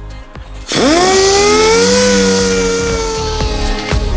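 Dual-action (DA) orbital sander starting up about two-thirds of a second in. Its whine rises quickly in pitch, then holds nearly steady and sags slightly as it works, with a hiss above it. It is sanding a car panel back through micro-blistered lacquer to a sound coat of paint.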